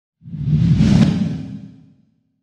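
Whoosh sound effect with a deep rumble under it, swelling in shortly after the start, peaking about a second in and fading away by the end.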